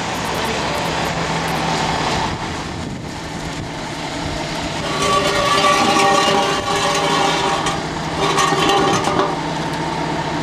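Crane truck engine running steadily under the hanging load, with a louder, higher droning whine that comes in about five seconds in and again near eight seconds as the crane works to move the suspended steel tank.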